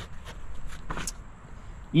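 A few faint clicks and rustles in the first second from a plastic plant pot being handled over loose potting soil.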